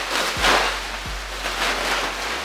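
A person sucking helium out of a large foil (Mylar) balloon through its neck: a breathy hiss that swells and fades, with the foil crinkling.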